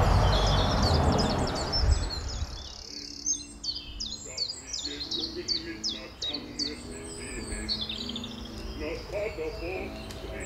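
A loud rushing noise fades out over the first two to three seconds, giving way to birdsong: many quick high chirps and falling notes. Low held tones come and go under the birds from about the middle on.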